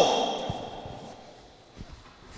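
A PA announcer's voice cut off, its echo through the ice arena dying away over about a second, then quiet arena room tone with a few faint knocks.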